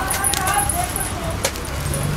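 Stacked metal bangles clinking and jingling as they are handled, with a few sharp clicks, over background voices.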